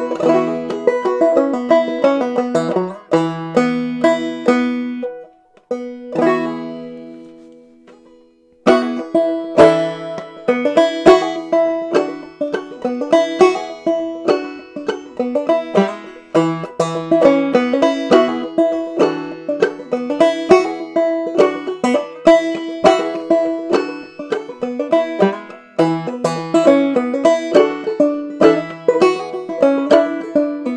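Solo banjo playing. A few picked phrases ring out and fade away over several seconds, then, about nine seconds in, a steady run of picked notes starts and continues.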